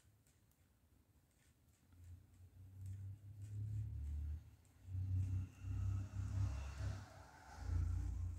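A low, uneven rumble that swells and fades several times from about two seconds in, over faint clicks of wooden knitting needles working a row.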